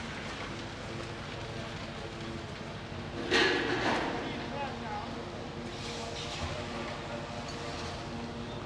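A concrete pump runs with a steady engine hum. A little over three seconds in there is a short loud rush of concrete being discharged down into column formwork.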